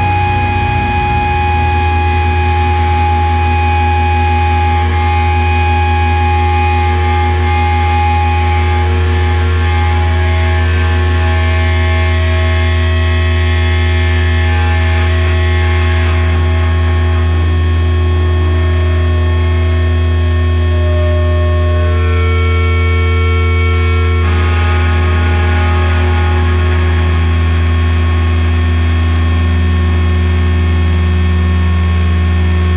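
Electric guitar and bass amplifiers left feeding back and droning as a sludge metal song ends: a loud, steady low hum under several held higher tones. A few of the higher tones change pitch about two-thirds of the way through.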